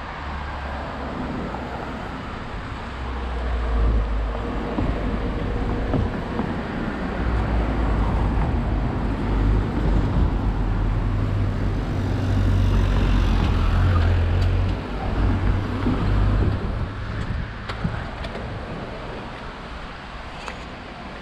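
Street traffic, with cars passing close by, under a low wind rumble on the microphone. The rumble swells from a few seconds in and eases off near the end.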